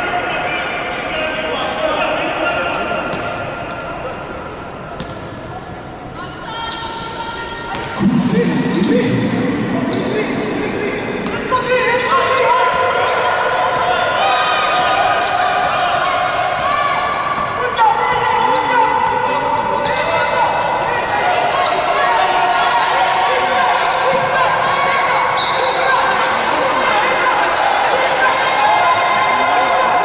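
Live basketball game sound in a large, nearly empty hall: players and benches calling out, a basketball being dribbled and sneakers squeaking on the hardwood, all echoing in the hall. The sound gets louder about eight seconds in.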